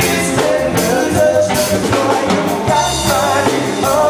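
A live rock band playing: electric guitar, electric bass and a drum kit, loud and steady.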